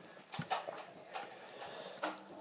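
Small scissors handled at and snipping into a foam squishy toy: a few faint, separate clicks.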